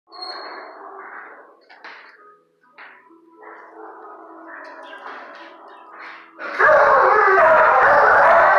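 Dogs barking in shelter kennels: scattered barks and calls at first, then a much louder burst of barking about six and a half seconds in.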